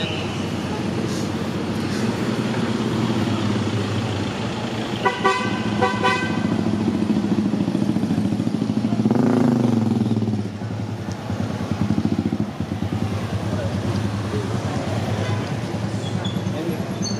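Motorcycle and car traffic passing close by, engines running steadily, with two short horn toots about five and six seconds in. A vehicle passes loudly about nine seconds in, then the noise drops back.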